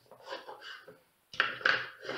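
Handling of a small wooden box on a tabletop: faint scraping, then two sharp wooden knocks about a second and a half in, followed by more scraping.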